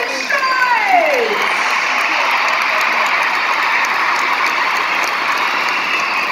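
Large arena crowd applauding and cheering in a steady wash of clapping, with a high cheer that falls in pitch during the first second or so.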